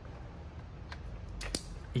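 MC4-style plastic solar cable connectors being pushed together into a branch connector, giving a few short plastic clicks, a faint one about a second in and two sharper ones near the end, the last the loudest, as the connectors latch.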